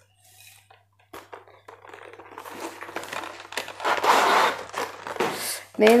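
Packaging rustling and crinkling as bubble wrap and paper are handled during unboxing. It grows louder about four seconds in, with a few light clicks.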